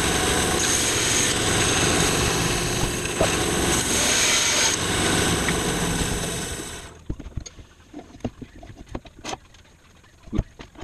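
Grizzly G0513 17-inch bandsaw cutting through a small mesquite log: a loud, steady sawing noise that dies away about seven seconds in. After it come scattered knocks and clatters of the wood being handled.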